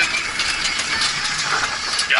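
A fire engine on the move, heard from inside its cab: the engine runs with steady road noise.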